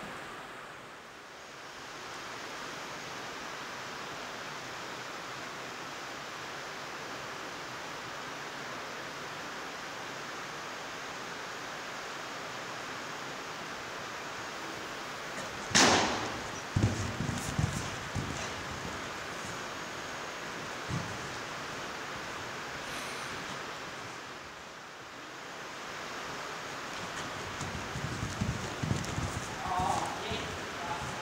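Rain pouring down on the riding hall's sheet-metal roof, a steady hiss. About halfway through, a sharp knock and then a few dull thuds as a horse jumps a low cross-rail and lands on the sand; low hoofbeat thuds return near the end as it canters.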